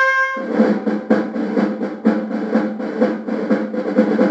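Instrumental introduction of a 1953 Japanese march-style popular song recording. A held brass chord breaks off about half a second in, and a snare drum roll of rapid, even strokes takes over.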